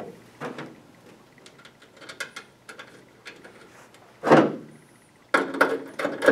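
Light clicks and taps of small metal retaining clips and hardware being handled against a light fixture's metal frame, with one louder, brief scrape about four seconds in.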